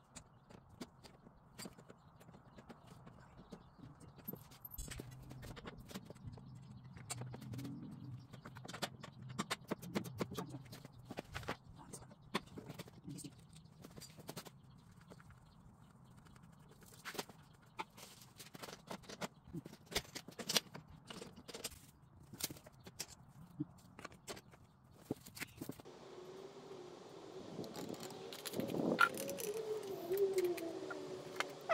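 Irregular light clicks and knocks of metal and plastic parts being handled and fitted while assembling a lawn mower's handle and control cables. Near the end a louder sound with a wavering tone.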